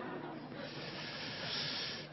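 Audience applauding: a steady, even wash of clapping that grows slightly brighter near the end.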